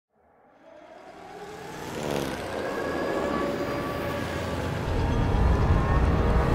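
A low, vehicle-like rumble fades in from silence and swells, growing heavier near the end. Several steady tones are held above it, with a brief falling glide about two seconds in.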